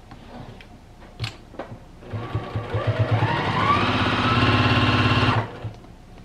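Juki TL-2010Q straight-stitch sewing machine sewing a seam along a folded fabric strip. It starts about two seconds in with a few separate needle strokes, speeds up with a rising whine, runs steadily and stops shortly before the end.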